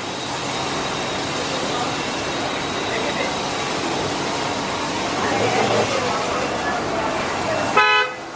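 Steady outdoor street noise, then a short car horn toot just before the end.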